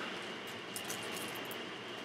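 Room tone in a pause between words: a steady hiss with a faint high-pitched whine, and a couple of faint ticks about three-quarters of a second in.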